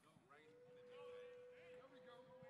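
Near silence: faint voices in the background and a faint steady tone that starts about a third of a second in and holds.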